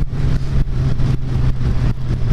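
Suzuki GSX-R sportbike engine running steadily at cruising speed, with wind rushing over the microphone.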